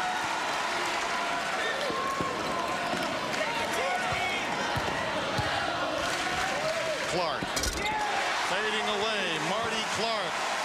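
Basketball game in a crowded arena: steady crowd noise with short squeaks from sneakers on the hardwood and a ball bouncing, then one loud thump about three-quarters of the way through.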